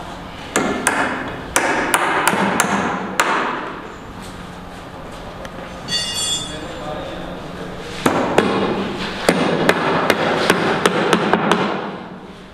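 Hammer blows on timber formwork as battens are nailed at the base of a plywood column box. A run of about seven sharp strikes comes in the first few seconds. After a pause there is a brief ringing clink around the middle, then a quicker run of about a dozen strikes until near the end.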